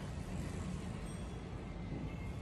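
Car engine idling: a steady low rumble heard from inside the cabin.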